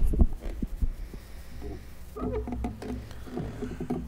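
Handling noise from a lectern gooseneck microphone being adjusted: a few dull thumps at the start, then scattered knocks and rubbing, over a steady low electrical hum from the sound system.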